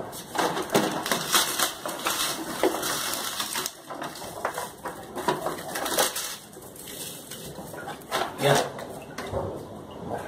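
Hands rustling and crunching in a mealworm-rearing box of bran and cardboard, with a quick run of small scrapes and clicks over the first few seconds, then quieter handling. A brief low vocal sound comes near the end.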